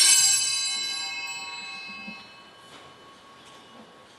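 Altar bell rung once: a bright ring of several high tones that fades away over about two seconds.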